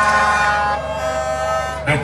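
A horn sounding one long steady note, which cuts off just before the end.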